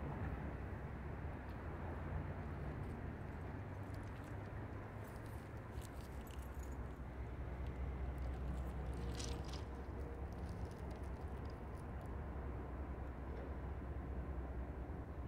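Norfolk Southern diesel locomotives running at a distance: a steady low rumble, with a few faint clicks and jingles about midway.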